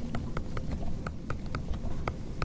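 Stylus tip tapping on a tablet screen during handwriting: a quick, irregular run of sharp ticks, about five a second.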